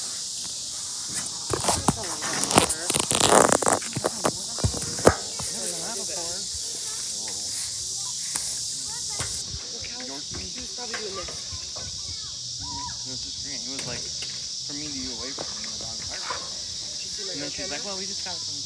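Steady, high-pitched chorus of insects. For a few seconds near the start, rustling and knocks drown it out as the phone is handled close to the microphone.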